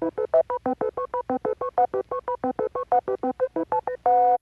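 Electronic transition sting: a rapid run of short beeps, about eight a second, most on one steady note with higher notes stepping about between them like a quick tune.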